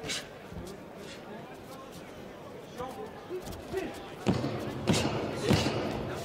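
Boxing gloves landing punches at close range: one thud right at the start, then three sharp thuds about half a second apart near the end, over steady arena crowd noise.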